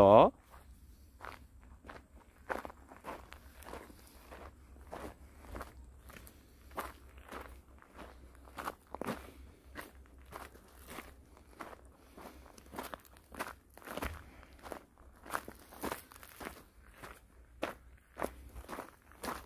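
Footsteps of one person walking on a gravelly dirt forest trail, a steady crunching step about twice a second.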